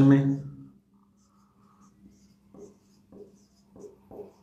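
Marker pen writing on a whiteboard: a few short, faint strokes in the second half, one after another.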